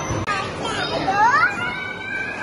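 A young child's high-pitched voice: a squeal rising sharply in pitch about a second in, then held high, over the general noise of children playing.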